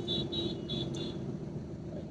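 Steady low hum of a car running, heard from inside the cabin. In the first second there is a faint run of about four short, high beeps.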